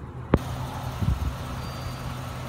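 A single sharp click, then a steady low hum of a vehicle engine idling.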